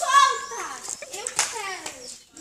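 Young girls' voices, a high-pitched cry at the start followed by broken exclamations, as children play, with a sharp click about one and a half seconds in.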